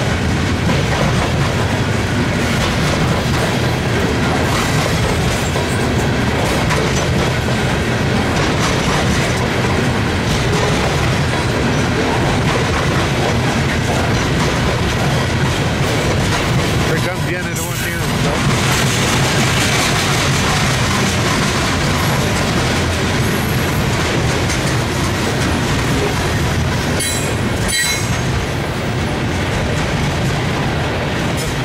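Loaded coal gondolas of a freight train rolling past at close range: a steady rumble and clatter of steel wheels over the rail joints, with a brief high wheel squeal near the end.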